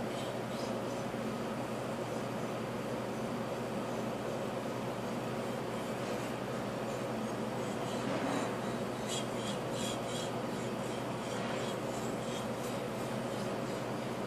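Steel knife blade stroked back and forth across a whetstone under light pressure, a soft repeated scraping as the edge is ground, over a steady background hum.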